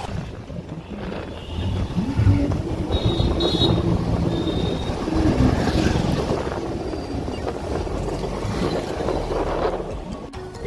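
Motorcycle running along a road: a steady engine hum and road rumble, with wind buffeting the microphone.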